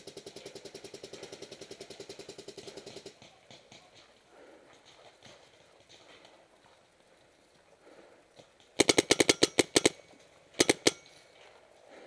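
Paintball markers firing in rapid strings. A fainter marker fires an even stream of about ten shots a second for the first three seconds. Near the end a much louder, closer marker, plausibly the player's Planet Eclipse Ego09, fires a quick burst of about ten shots and then two or three more.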